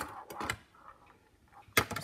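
Handling noise from a knitted scarf and its knitting needles: a few light clicks and rustles, then a sharp double knock near the end, like a needle knocking against the board.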